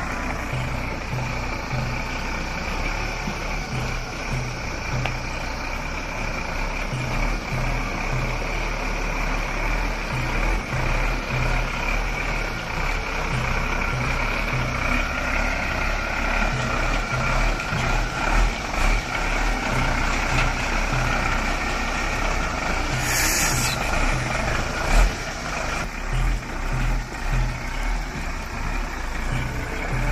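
Diesel engine of a Tata tipper truck running at low revs with a steady, even throb as the truck crawls over rocks through a shallow stream. A short hiss comes about two-thirds of the way in, and a single knock follows a moment later.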